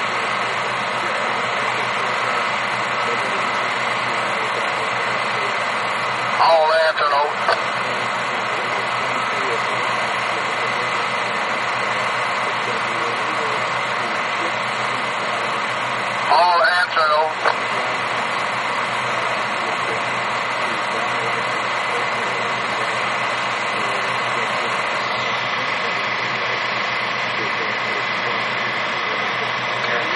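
Cat 938H wheel loader's diesel engine running steadily. Two short voice transmissions come over a railroad radio scanner, about a quarter and halfway in.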